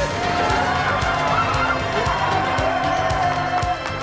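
Background music with a steady beat and a long held note.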